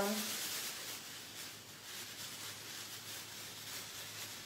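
Thin plastic trash bag liners rustling and crinkling as they are handled and pushed through one another. The rustle is loudest in the first second, then soft.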